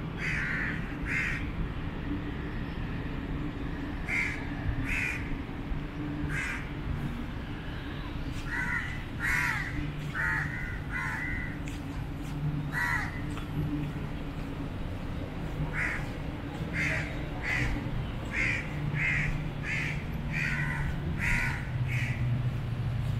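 A bird calling over and over in short calls, some single and some in quick runs of two or three, coming more often in the second half, over a steady low hum.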